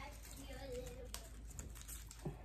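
Faint rustling and scratching of artificial flower stems being pushed in among the twigs of a grapevine wreath, with a small click about a second in.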